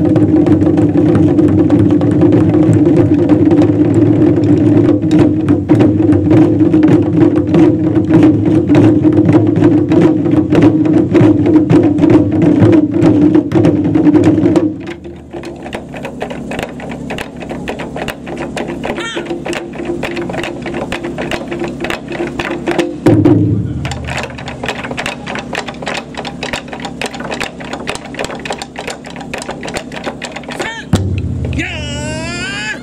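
Japanese taiko drum ensemble playing together, large barrel drums and smaller shime-style drums struck with sticks. The first half is loud and dense. About halfway through it drops suddenly to a quieter passage of quick, even strikes, with one heavy hit about two-thirds through.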